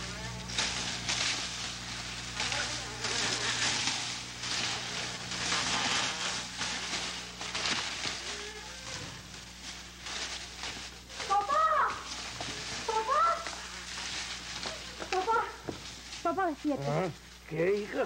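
A rustling hiss, like stirring foliage, for the first eight seconds or so, over a low hum. Then, in the second half, several short wailing cries that rise and fall in pitch.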